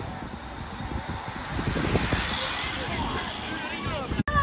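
A bunch of track racing bicycles rushing past close by: a whoosh of tyres and air that swells about halfway through and then fades.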